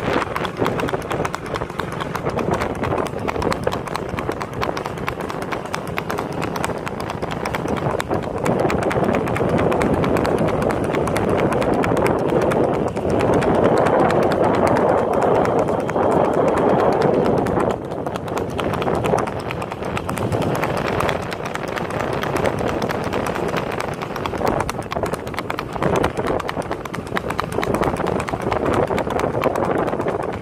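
Horse's hooves beating quickly and steadily on a paved road as it runs at speed under a rider, over a steady rushing noise that grows louder in the middle.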